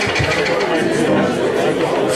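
A voice vocalising speech-like, wordless sounds through a microphone as part of an improvised vocal performance.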